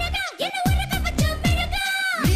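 Tamil film dance song: a woman's voice singing a held high note over a driving beat of pitch-dropping electronic drum hits, about three a second.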